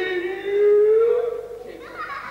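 A single voice holding one long, high sung note that rises slightly in pitch and fades out near the end.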